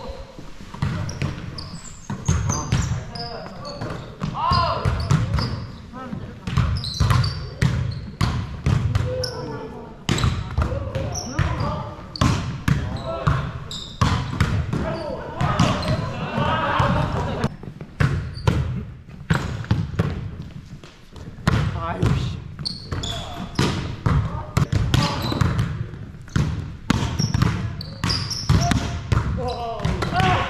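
Volleyballs being hit and bouncing on a wooden gym floor, with players' footsteps and indistinct voices: many sharp knocks at uneven intervals throughout.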